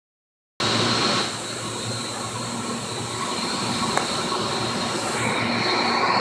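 Steady din of an aquarium life-support pump room: many large electric water pumps and filtration equipment running together, a constant hum with a steady high whine over it. It starts suddenly about half a second in.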